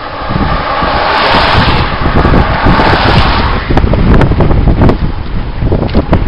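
Two cars passing close by in quick succession on a wet road, their tyres hissing in two swells that fade about three and a half seconds in. Heavy wind buffeting on the microphone runs throughout and is loudest in the second half.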